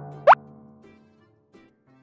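Cartoon sound effect: a quick upward-sweeping pop about a third of a second in, over a low musical note that fades away, followed by a few faint scattered notes of children's background music.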